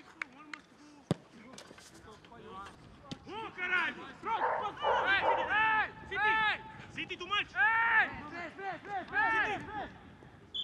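Footballs being kicked on a grass pitch: a few sharp strikes in the first second. After that comes a run of short, loud calls, several a second, each rising and falling in pitch, through most of the rest.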